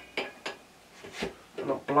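Two sharp metal clinks in quick succession, then a duller knock about a second in, as a ball bearing is driven out of the cast-iron headstock of a midi wood lathe; the bearing comes free.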